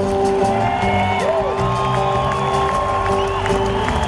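Live band playing an instrumental passage with held notes and chords, while the audience cheers and whoops.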